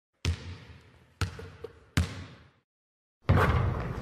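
A basketball bouncing three times, the bounces coming slightly closer together, each ringing out with a roomy echo. A sudden loud wash of noise begins near the end.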